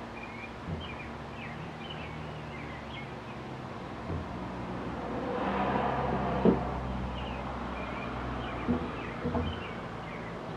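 Outdoor porch ambience: small birds chirping faintly throughout, a vehicle passing that swells and fades around the middle, and a few light clicks of a fork and knife against a plate.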